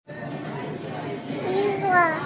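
Low room noise, then near the end a baby's short high-pitched vocalization that rises in pitch.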